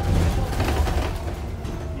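Inside a moving Alexander Dennis Enviro400 MMC double-decker bus: low engine and road rumble with body rattles, a few knocks and a faint whine, loudest in the first second.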